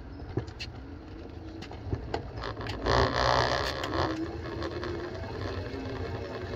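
Wind and road rumble on the handlebar-mounted camera of a RAEV Bullet GT e-bike as it rides slowly, with scattered light clicks and rattles. A louder rush of noise comes about three seconds in, and a faint steady hum runs through the last two seconds.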